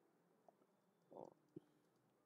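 Near silence: room tone, with a faint brief low sound a little after one second and a soft click shortly after.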